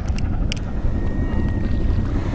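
Wind buffeting the microphone, a steady low rumble, with one short click about half a second in.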